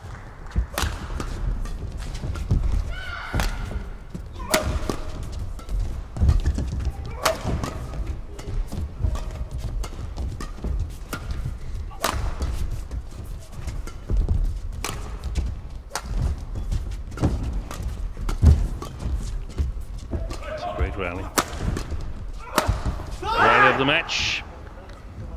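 A long men's doubles badminton rally: rackets striking the shuttlecock about once a second, sharp and echoing in a large hall, with thuds of footsteps on the court.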